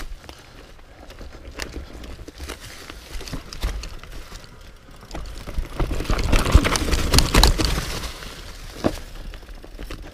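Mountain bike riding down a steep, rough forest trail: tyres on dirt and leaves with a constant clatter of the bike rattling and clicking over roots and rock. The rattling grows loudest and roughest from about five and a half to eight seconds in, on the steepest part of the descent, then settles.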